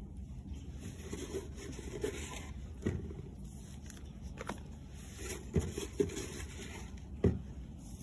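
Gloved hand working potting soil in a plastic nursery pot while setting Ixia bulbs: soft rubbing and scraping of soil, with a few light clicks scattered through.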